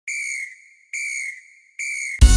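A whistle blown three times in short, evenly spaced blasts of about half a second each, one steady high pitch, opening a carnival road-march track.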